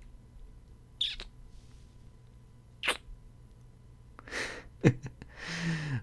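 Close-miked kissing: three short wet kiss smacks about a second, three seconds and five seconds in, with breaths between and a soft hummed "mm" near the end.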